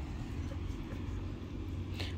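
Steady low outdoor background rumble, with no distinct events, in a pause between children's and adult voices.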